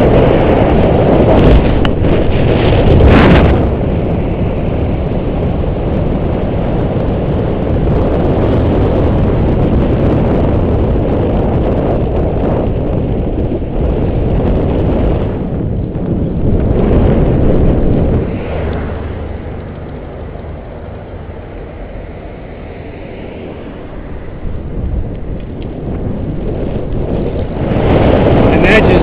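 Wind buffeting the microphone of a camera riding along on a moving bicycle, a loud low rush. It eases off for several seconds past the middle, then builds again near the end.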